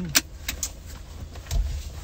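Low steady rumble inside a car cabin, with a sharp click just after the start, two lighter clicks soon after, and a brief swell of low rumble about a second and a half in.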